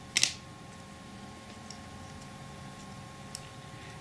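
Quiet room tone with a faint steady hum, broken by a brief hiss just after the start and a faint tick later on, as fingers press a small copper wire bracket into a wooden jig.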